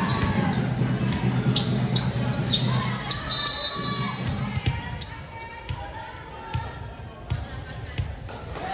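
Volleyball bounced on a hardwood gym floor, a string of sharp thuds echoing in the large hall, under voices of players and onlookers that thin out halfway through. A brief high-pitched tone sounds about three and a half seconds in.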